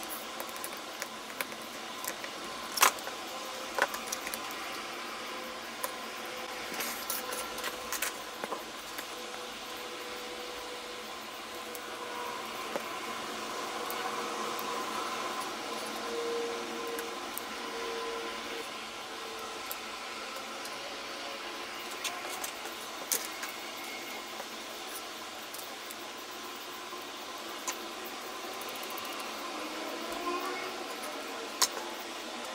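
Small clicks, taps and light rattling from hand-assembling a small kit: a precision screwdriver on tiny screws, a plastic battery box, thin wooden plates and a plastic gear motor, over a steady background hiss. The clicks come scattered throughout, with the sharpest about three seconds in and again about twenty-three seconds in.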